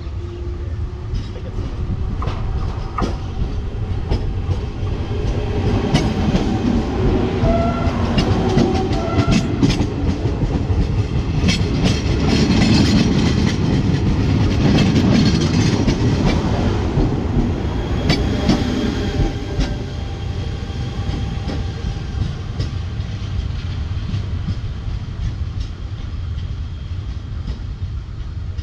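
Electric commuter train (electric multiple unit) passing close by. It grows louder as it approaches and is loudest for several seconds as the cars go past, with wheels clicking over the rail joints, then it fades as it moves away.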